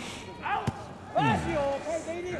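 A single sharp smack of a kickboxing strike landing, about a third of the way in, with shouting voices around it.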